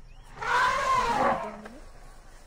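An elephant gives a single harsh trumpeting call, loud and about a second long, starting about half a second in.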